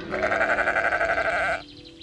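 A sheep bleating: one long, wavering bleat lasting about a second and a half that stops abruptly.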